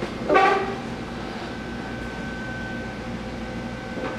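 A short burst of laughter about half a second in, then a steady hum carrying a thin high tone that fades near the end.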